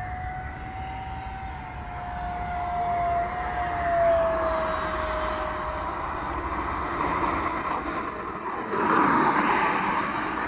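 Radio-controlled jet's engine on landing, a high whine slowly falling in pitch as it is throttled back, with a lower tone sliding down over the first half. Over the last few seconds a louder rushing, scrubbing noise grows as the jet rolls out and slews sideways on the asphalt.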